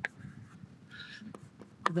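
Chalk writing on a blackboard: a sharp tap at the start, a short scratchy stroke about a second in, and another light tap.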